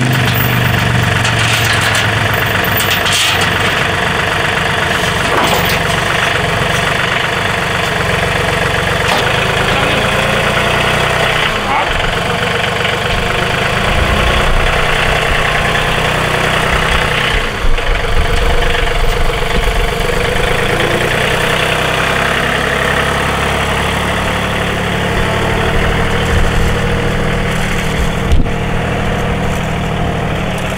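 John Deere 3033R compact tractor's three-cylinder diesel engine running steadily, with a few short knocks past the middle and near the end.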